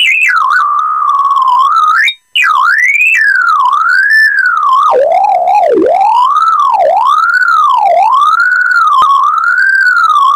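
A single electronic synthesizer tone gliding in pitch, driven over MIDI by two CdS light sensors as a hand shades them. It cuts out briefly about two seconds in, then swoops down and back up about once a second.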